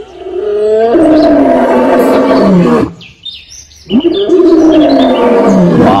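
White lion roaring: two long calls, the second starting about four seconds in, each dropping in pitch at its end.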